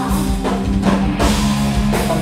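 Live rock trio playing loudly: electric guitar, bass guitar and drum kit, with regular drum and cymbal hits over sustained guitar and bass notes.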